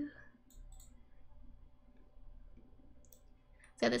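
A hummed note cuts off at the start, then a few faint clicks at a computer in a quiet pause. A woman starts speaking near the end.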